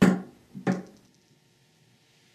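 A loop of joined stainless steel worm-drive hose clamps set down on a hard surface: two metallic clinks about two-thirds of a second apart, each ringing briefly.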